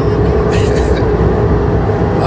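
Recorded car-engine sound effect running steadily: a continuous low rumble with a held hum.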